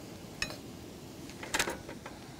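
A metal spoon stirring diced onions, peppers and spices in a small non-stick frying pan: one light clink, then a short run of scrapes and clinks against the pan about three-quarters of the way through.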